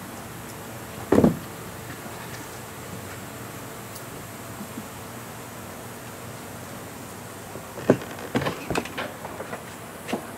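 Handling knocks on a jet ski: one sharp knock about a second in, then a run of clicks and knocks near the end as the seat is released and lifted off, exposing the engine compartment. A steady faint background hiss lies under it all.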